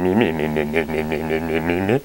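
A man's low, sustained hum with closed lips, with a short wobble in pitch near the start, cutting off abruptly at the end.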